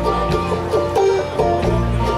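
Live bluegrass band of banjo, mandolin and acoustic guitars playing an instrumental passage between vocal lines, with quick plucked notes over a steady bass line.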